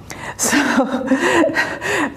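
A woman speaking, starting with a short, sharp intake of breath.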